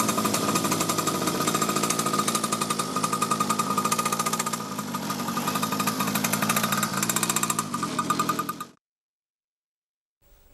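Motorcycle engine running with a rapid, even firing pulse, a little quieter midway, cutting off abruptly about a second before the end.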